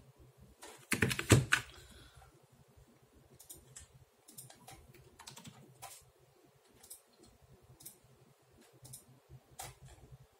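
Computer keyboard keys tapped irregularly, a few scattered clicks at a time, after a short cluster of louder knocks about a second in.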